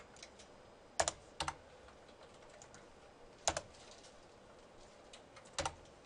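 A few separate keystrokes on a computer keyboard, single clicks a second or two apart.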